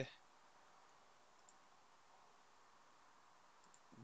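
Near silence: room tone, with a couple of faint computer-mouse clicks, about a second and a half in and near the end.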